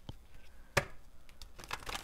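A deck of oracle cards shuffled by hand: faint card rubbing with a few sharp card snaps, one a little under a second in and a quick run of them near the end.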